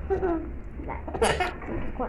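A young puppy whimpering: a short falling whine near the start, then a louder, higher cry a little past the middle.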